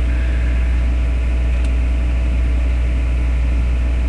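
A steady low hum with an even hiss over it, the background noise picked up by a webcam microphone, holding unchanged throughout.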